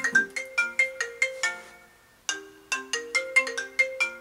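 A smartphone ringing with a melodic ringtone: a quick run of short, plinking notes that stops briefly about two seconds in and then starts the phrase over.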